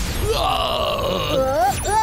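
An animated character's strained, groaning yell as magic energy beams are fired, rising in pitch near the end. Under it runs a steady magical beam sound effect.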